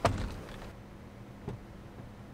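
A car door shutting with a solid thud, heard from inside the cabin of a Ford Police Interceptor Utility, followed by a softer thump about a second and a half later.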